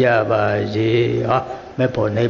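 A Burmese Buddhist monk's voice reciting a loving-kindness (metta) verse in a slow chant, holding one low note for over a second. A brief pause comes near the end before the recitation resumes.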